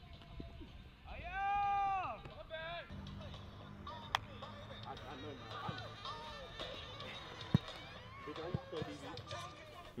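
Voices at an outdoor football practice: a long, rising-and-falling yell about a second in, then a shorter call and scattered talk, over background music. Two sharp smacks stand out, one near the middle and one later.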